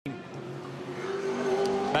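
Holden Commodore V8 Supercar's V8 engine running at speed, growing steadily louder as it nears, its note rising slightly in pitch over the last half-second as it accelerates.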